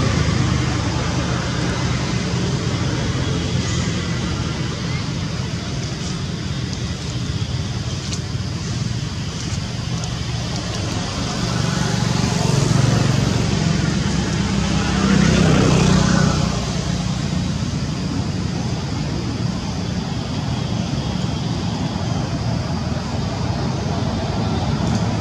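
Steady outdoor traffic noise from passing vehicles. One goes by louder about fifteen seconds in, its pitch rising then falling as it passes.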